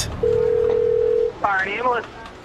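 A single steady telephone tone held for about a second, the signal of an incoming call on an emergency dispatch line, followed near the end by a brief snatch of a voice.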